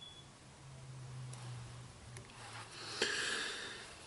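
Quiet room with a faint low hum, then a single breath drawn audibly about three seconds in, fading away over about a second.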